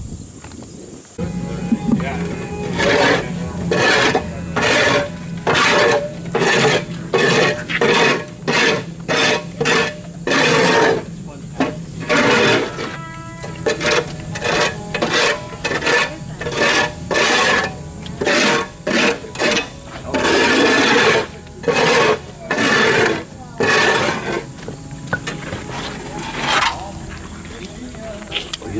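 Sandpaper rubbed in short, irregular strokes over the stained carved-concrete rock, scratching back the dark stain so the texture shows through. Music plays underneath with a steady low note.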